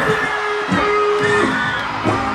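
Live dancehall concert music through the stage sound system, with a large crowd whooping and yelling over it.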